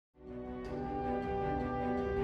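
String orchestra playing held chords of a film score, swelling in after a split second of silence.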